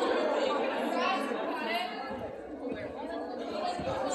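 Chatter of several voices echoing in a large gymnasium, with a few soft thumps near the end.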